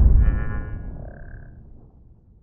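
Logo-reveal sound effect: the low rumble of a deep cinematic boom dying away over about two seconds, with a brief high shimmering chime over it in the first second and a half.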